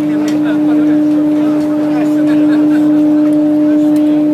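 A ship's horn blowing one long, steady low note, over the chatter of a large crowd.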